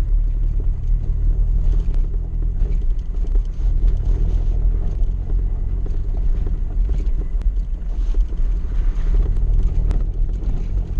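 Suzuki 4x4's engine running steadily at low speed, a continuous low rumble heard from inside the cab as it crawls over a rough stony track, with a few faint knocks.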